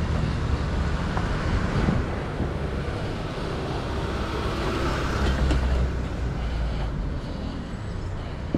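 Small light truck's engine running as it drives slowly past close by, a steady low rumble that is loudest about five seconds in.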